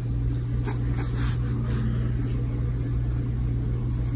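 Mechanical pencil lead scratching on paper in a few short sketching strokes, most of them in the first half, over a steady low hum.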